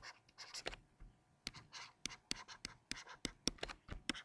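Faint stylus tip tapping and scratching across a tablet screen in short, irregular strokes while handwriting the words "totally diff."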